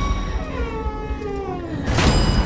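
A girl's long wailing cry, sliding down in pitch, over a low pulsing rumble and sustained high tones of horror-trailer scoring.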